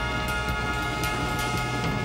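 Big band brass section, trombones and trumpets, holding a sustained chord together.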